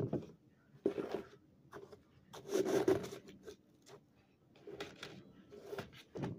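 Gritty, crunchy bursts of someone chewing and handling chunks of packed cornstarch, irregular, with a longer scraping burst about two and a half seconds in.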